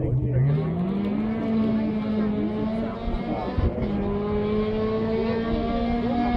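Rally car engine running hard on a special stage. Its revs climb over the first second, then hold high and steady, with a brief dip about halfway through.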